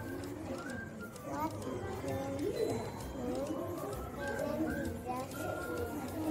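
Young children talking over one another, their high voices overlapping without a break.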